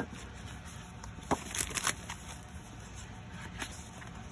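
Sheets of patterned craft paper being leafed through and handled: a few brief crisp paper rustles and snaps, bunched a little before the middle, with one more near the end.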